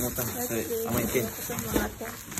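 Indistinct voices talking, with plastic bags and bubble wrap rustling and crinkling as they are handled in a cardboard box.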